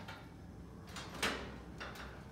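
A short knock about a second in, then a fainter tick shortly before the end, over quiet room noise.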